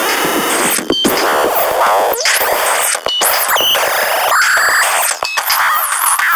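Eurorack modular synthesizer playing a loud, noisy electronic texture: dense filtered noise with sweeping pitch glides and short high tones, broken by sudden cut-outs about a second in, around three seconds in and near the end, with no steady beat.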